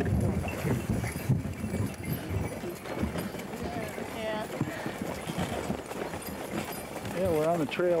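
Hoofbeats of a team of draft horses pulling a sleigh along a snowy trail, over the low running rumble of the moving sleigh. A voice comes in near the end.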